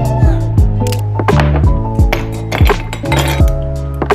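Background music with a steady drum beat, with ice cubes clinking as they drop into a glass.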